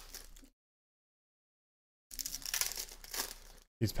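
Foil trading-card pack wrappers crinkling and tearing as packs are ripped open by hand. It comes in two short stretches, at the start and again from about two seconds in, with dead silence between.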